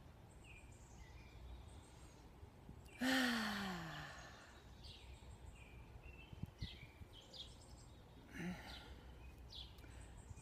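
A woman's long, breathy sigh, falling in pitch, about three seconds in. Faint bird chirps come and go in the background.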